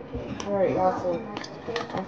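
A voice talking, with a few light clicks and taps from a water bottle's lid being handled.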